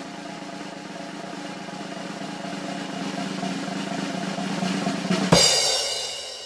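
A snare drum roll that slowly grows louder, ending about five seconds in with a crash: a bass-drum hit and a cymbal that rings out and fades.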